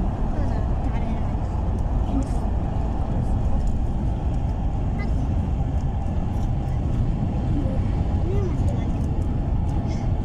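Steady road and engine rumble heard from inside a moving vehicle at speed, with faint indistinct voices in the background.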